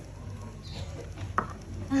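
A pause in amplified speech: a public-address system's steady low electrical hum, with a single sharp click about a second and a half in.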